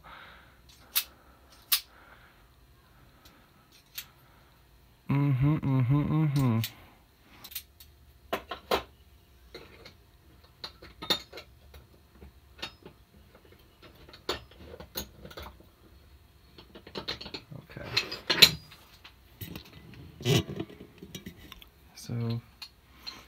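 Scattered metallic clicks and clinks as the brass levers and key of an opened Folger Adam detention lock are handled and fitted, denser toward the end. A man's voice sounds briefly a little after five seconds in.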